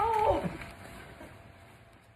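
A woman's short, drawn-out startled cry, falling in pitch over about half a second at the start and then trailing off.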